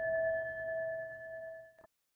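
A struck meditation bell of the singing-bowl kind ringing on, two clear steady tones with a fainter higher one, slowly fading; it marks the close of the dharma talk. The ring cuts off suddenly near the end.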